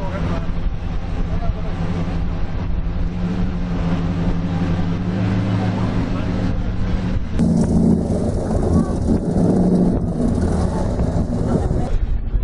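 Car engine running at low revs with a steady low hum as the car moves slowly, with voices around it. About seven seconds in, the sound cuts abruptly to another recording of a running car.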